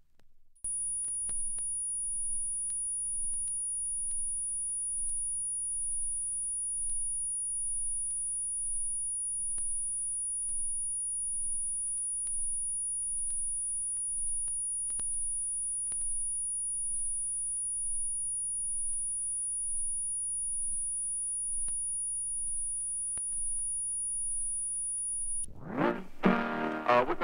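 A steady high-pitched electronic whine over a low pulsing hum that throbs about one and a half times a second, with scattered faint clicks. It cuts off abruptly near the end.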